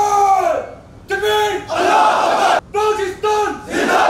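Sailors giving ceremonial cheers: long held shouted calls are answered by a loud group shout in unison, twice, the second answer coming as arms are raised.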